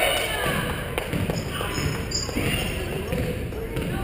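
A basketball being dribbled on a hardwood gym floor during play, several short bounces, with shouting voices echoing in the large gym. The loudest moment is a shout right at the start.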